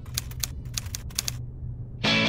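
Manual typewriter keys striking: a quick run of about ten clacks lasting just over a second, then stopping, over a low steady hum.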